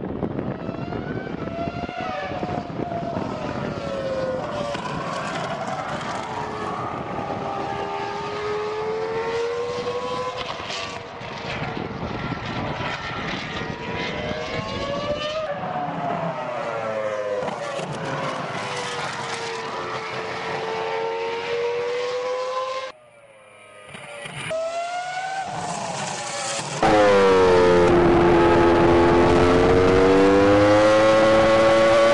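Engine of a Red Bull Formula One showcar heard from trackside, its note repeatedly climbing and falling in pitch as the car speeds up and slows through the corners. About 27 seconds in it changes to a much louder, close engine note heard onboard the car.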